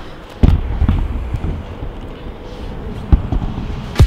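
Camera handling noise: a loud thump about half a second in, then low rubbing and a few small knocks as the camera is moved about against clothing.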